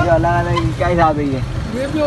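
Speech over a steady low rumble, most likely vehicle engines.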